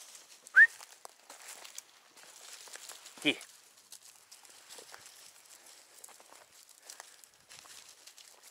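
A single short, sharp whistle gliding upward, about half a second in. Faint rustling and crackling of dry leaf litter underfoot follows.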